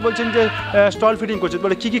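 Beetal goat kids bleating, several wavering calls overlapping.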